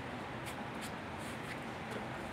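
Faint rustling and light scraping of a sheet of chipboard being handled against a wooden cutting board, over steady room tone.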